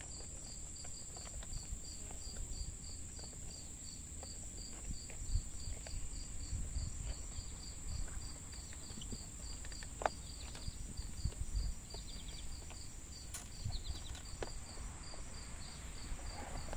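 Insects chirping steadily: a high, even drone with a regular chirp about three times a second. Under it is a low rumble with a few light clicks as a rubber weatherstrip is pressed by hand into a metal window channel.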